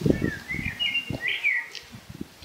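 A songbird sings a short warbling phrase of high gliding notes, with low dull thumps underneath, the loudest right at the start.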